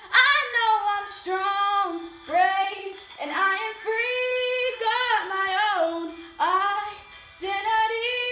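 A young girl singing a pop song solo, holding long notes with vibrato in several short phrases separated by brief breaths.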